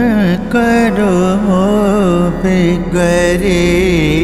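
A male voice singing long held, ornamented notes without words in a South Asian classical style, over steady instrumental accompaniment.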